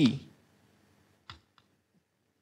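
Chalk tapping on a blackboard while writing: two short clicks, the second fainter, in the second half of the pause.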